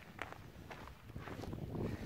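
A few soft footsteps on a gravel road shoulder over a low steady rumble.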